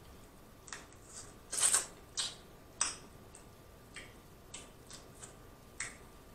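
Close-up wet mouth sounds of eating shellfish: lip smacks and sucks at the shell in a string of short, sharp clicks, irregular and a couple per second, the loudest about one and a half seconds in.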